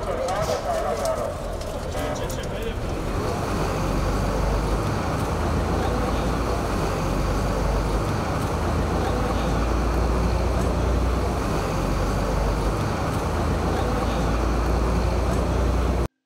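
A voice briefly at the start, then steady outdoor street noise with a low rumble of vehicle traffic.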